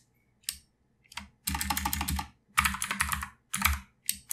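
Typing on a computer keyboard: a couple of single clicks, then three quick runs of rapid keystrokes.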